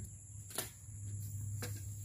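Two sharp chops of a machete blade striking dry branches, about a second apart, the first the louder.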